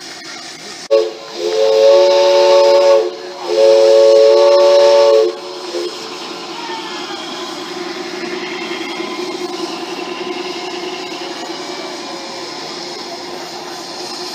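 Multi-note chime train whistle sounding two long blasts of about two seconds each, starting about a second in, followed by a steadier, quieter running noise.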